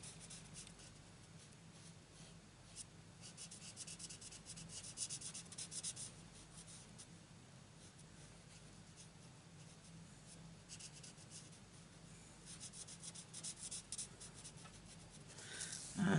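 Faint scratch of a Stampin' Blends alcohol marker's tip rubbing on cardstock as small flowers are coloured in. It comes in three runs of quick short strokes, with pauses between.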